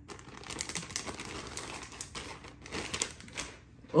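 Thin plastic packaging bag crinkling and rustling as it is handled and opened, an irregular run of small crackles that gets busier in the second half.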